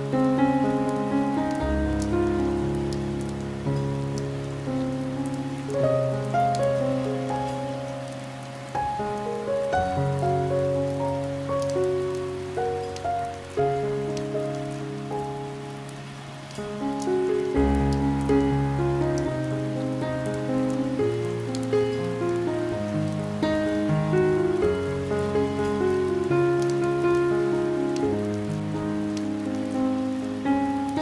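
Slow piano music, single notes and chords over low bass notes, laid over steady rain pattering on a window glass with fine scattered drop ticks.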